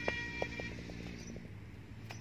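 A leather cricket ball bouncing on a concrete pitch after a shot: a series of small knocks that come quicker and quieter as it settles, over a steady low hum. Sustained music tones fade out in the first second.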